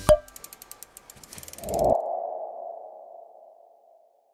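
Logo sting sound effect: a sharp hit, then a run of quick ticks building for about a second and a half, ending in a single ringing tone that swells near the two-second mark and slowly fades out.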